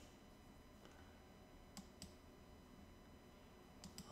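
Near silence with three faint computer mouse clicks: two close together just before the middle and one near the end.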